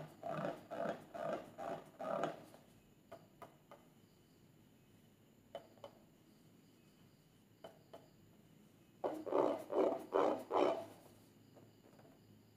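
Hands squeezing and rubbing a filled rubber balloon, the rubber squeaking in two runs of about six strokes each, one near the start and one about nine seconds in, with a few faint clicks between.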